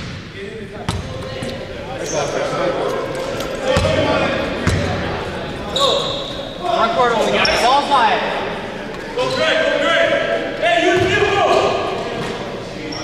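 A basketball bouncing a few times on a hardwood gym floor, with players shouting and calling out to each other in an echoing gymnasium.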